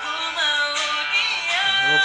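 A young male vocalist singing a slow pop ballad into a microphone, holding and gliding between notes over light band accompaniment.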